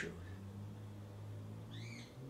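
A steady low hum, and near the end a single brief high-pitched squeak that rises and falls.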